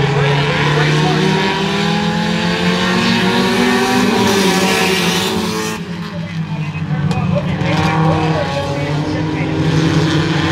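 A pack of Pure Stock race cars running together on a paved oval, their engines droning in a layered mix of pitches. The engine note rises over the first few seconds, then drops off suddenly about six seconds in as the pack moves away.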